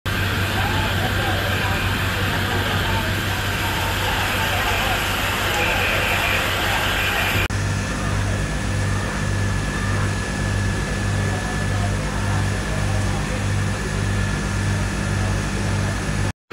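Fire-scene street noise: fire engines running steadily, with voices of the crews and onlookers. After a cut about halfway through, a low hum throbs about twice a second under the noise.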